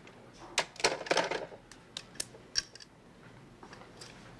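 Corded desk telephone's plastic handset being hung up on its cradle: a short run of clicks and clatters in the first three seconds.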